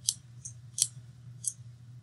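A computer mouse clicking about four times, sharp short clicks while the map is dragged and panned, over a low steady hum.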